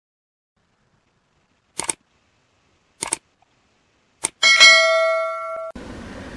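Edited-in transition sound effects: two short clicks about a second apart, then a click and a bright metallic chime that rings for about a second and cuts off suddenly, followed by faint room hiss.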